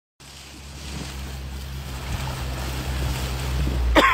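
Wind buffeting the microphone and choppy lake water washing against a moving canoe, over a steady low hum. The sound grows gradually louder.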